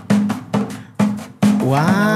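A hand drum struck by hand about four times in an uneven beat, each hit a sharp knock followed by a short low ringing tone.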